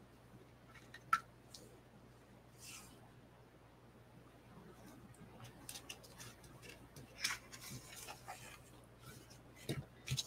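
Faint rustling and soft clicks of a ribbon and cardstock being handled on a desk, as the ribbon is pressed onto a card base. The sounds are scattered and come most often in the second half.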